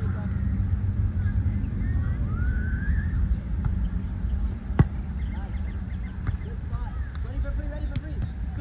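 A volleyball struck once by a player's hands or arms during a rally: a single sharp slap a little under five seconds in. It sounds over a steady low rumble, with players' voices calling faintly.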